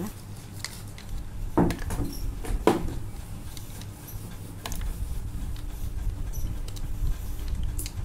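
Kitchen handling sounds around a stainless steel mixer jar: scattered light clicks and two louder knocks in the first three seconds, then a low rumble in the second half.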